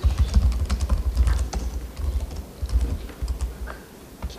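Fast typing on a computer keyboard: a dense run of key clicks with dull low thumps, briefly pausing about two seconds in.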